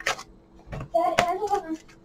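A deck of cards being shuffled by hand, with a few short card snaps and taps. A brief murmured voice comes about a second in.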